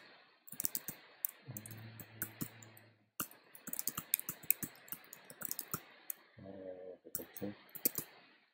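Typing on a computer keyboard: a run of quick, irregular keystrokes with a short pause about three seconds in.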